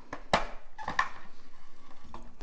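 Clear plastic packaging tray crackling and clicking as a four-slot battery charger is pulled out of it and set down, with two sharp clicks, about a third of a second in and at about one second.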